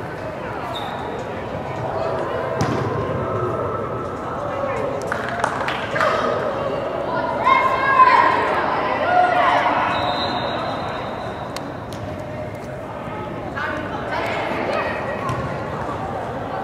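Youth soccer players and spectators shouting and calling out during play, with scattered sharp thuds of the ball being kicked. The loudest shouts come about halfway through.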